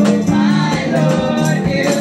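Live gospel praise and worship music: singing into a microphone over sustained low accompaniment, with hand percussion keeping a steady beat.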